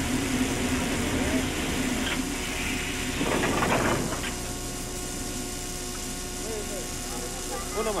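Railway couplers meeting as a locomotive is coupled to a carriage: a brief clattering rattle about three seconds in, over a steady engine hum.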